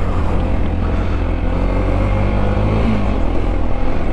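Sinnis Terrain 125's small single-cylinder four-stroke engine running steadily as the bike rides down a rutted dirt lane, its note rising briefly about three seconds in, over a heavy low rumble of wind on the microphone.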